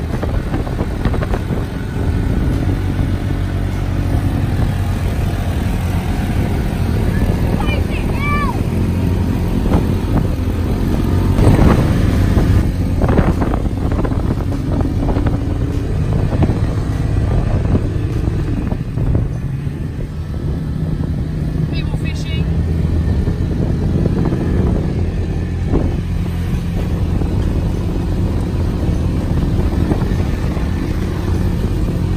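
Engine of an open side-by-side buggy running steadily as it drives along beach sand, heard from inside the cab, with the engines of the quad bikes and buggy ahead mixed in. The engine note eases briefly about two-thirds of the way through.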